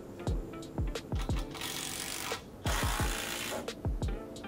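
Background music with a steady beat. Two bursts of a cordless drill-driver running in the middle, with a short pause between them.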